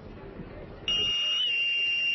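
A boatswain's pipe sounding one long, loud, high note for about a second and a half, stepping up slightly midway and rising at the end, as when piping someone aboard ship.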